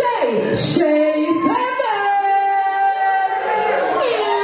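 A woman singing live into a handheld microphone, her pitch sliding through a short phrase, then holding one long, steady note from about two seconds in until near the end.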